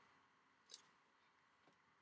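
Near silence: quiet room tone with one faint, brief click less than a second in.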